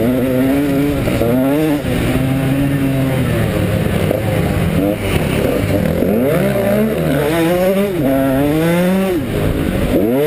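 KTM 125 SX two-stroke single-cylinder motocross engine under way, revving up and dropping back again and again as the throttle is worked around the track.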